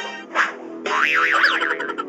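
Cartoon comedy sound effect: a springy, warbling tone that wobbles up and down in pitch a few times, starting about a second in, over background music with steady held notes.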